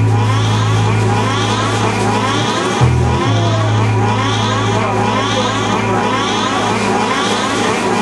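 Noise-rock band playing live: a held low bass note under a dense, loud wash of noisy sound, with the bass shifting briefly to another note about three seconds in.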